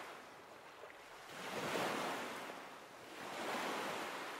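Quiet washing of water waves, a hiss that swells and fades about every two seconds.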